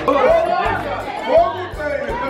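Party chatter: several people talking over one another, with music playing underneath.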